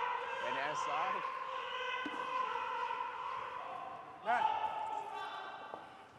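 Curling stone sliding down the ice, a steady rumble that slowly fades as the stone slows and comes to rest. Short voice calls come through about a second in and again after four seconds.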